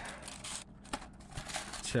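Cardboard box handled and turned over in the hands: soft rustling and rubbing of the cardboard, with a few light ticks.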